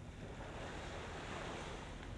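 A steady, low-level wash of waves on the shore, mixed with wind on the microphone.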